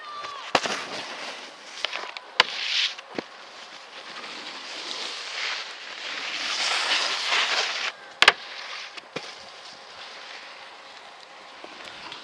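A snowboard sliding and scraping over snow, a rushing hiss that swells to its loudest around the middle, broken by several sharp knocks, the loudest about two seconds in and again about eight seconds in.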